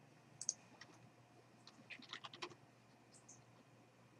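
Faint typing on a computer keyboard: a single click about half a second in, then a quick run of keystrokes around two seconds in.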